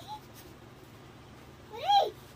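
A short pitched call that rises and falls in pitch near the end, the loudest sound here, with a fainter one at the very start.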